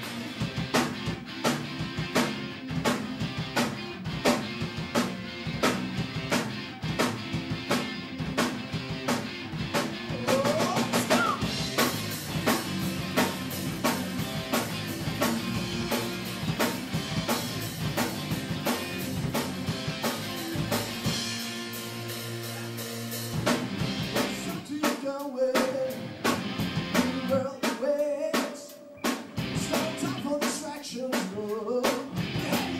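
Live metal band playing: a drum kit pounding a steady beat under electric guitars and bass. About two-thirds of the way through the drums drop out for a couple of seconds, then return with heavy accented hits.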